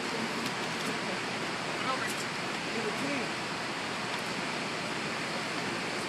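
A steady rushing noise with faint voices beneath it.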